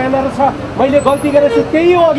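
Speech: a person talking continuously and emphatically, over a faint outdoor background.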